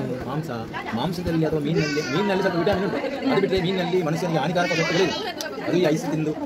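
Speech only: men in conversation.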